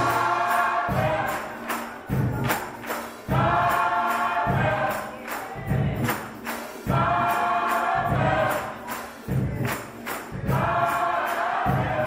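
Gospel choir singing, with sustained phrases that come in waves every three to four seconds over a bass line, and sharp percussion strokes keeping a steady beat.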